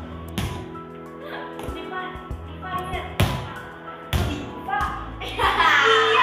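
Background music with four sharp thuds, about a second apart, from a small ball being slapped and caught by hand. Girls' voices call out loudly near the end.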